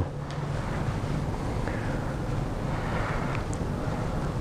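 Steady room background noise: an even hiss over a low, constant hum, with no distinct events.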